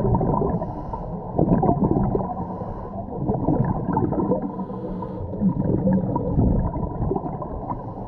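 Muffled underwater sound picked up by a GoPro: a scuba diver breathing through a regulator, with hissing inhalations and gurgling bursts of exhaled bubbles, the loudest bubbling about one and a half seconds in.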